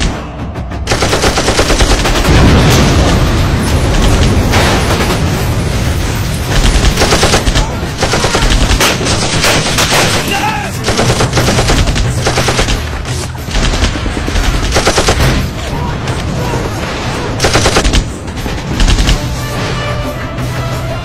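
Sustained automatic gunfire, an exchange of fire in repeated rapid bursts, over background music.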